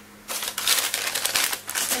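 Hands rubbing and brushing together to wipe off bath-bomb glitter: a loud, dense, scratchy rustle of rapid little clicks that starts about a third of a second in.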